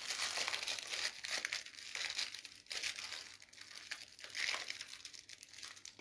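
Faint, irregular crackling and rustling noise with no voice.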